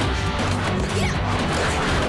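Action-score music over a hand-to-hand fight, with a string of sharp punch and crash sound effects landing throughout.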